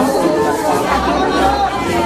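Several people talking and calling out, with music playing underneath.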